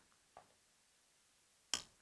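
Near silence with a few faint small clicks of metal nuts being handled on a bolt over a cloth-lined tray. A brief sound comes just before the end.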